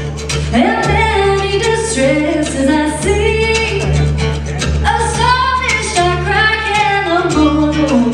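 A woman sings a traditional song, accompanied by acoustic guitar, mandolin and upright bass, with long held bass notes under the voice.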